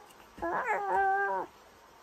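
A baby vocalizing without words: one drawn-out call of about a second, starting about half a second in, its pitch rising and then holding steady.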